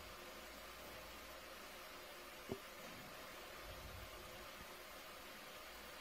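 Faint steady background hiss on the audio line, with one short click about two and a half seconds in.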